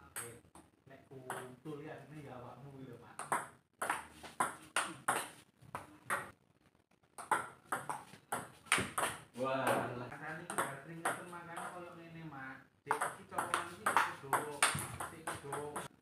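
Table tennis rallies: the ball clicking off the paddles and bouncing on the table in quick, uneven runs of sharp ticks, with short breaks between points.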